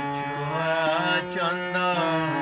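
Harmonium playing steady held reed notes, with a man's voice singing a long, wavering wordless note over it from about half a second in.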